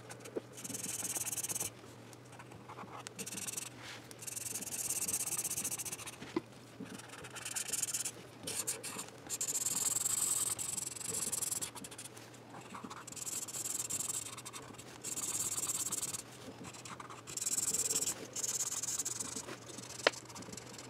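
Felt-tip magic colour pen rubbing back and forth on a paper colouring page: runs of scratchy strokes, each a second or two long, with short pauses between.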